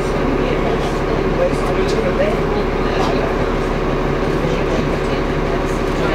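Interior noise of a Transbus Trident double-decker bus: its diesel engine running with a steady low hum, heard from inside the lower-deck saloon, with passengers' voices murmuring over it.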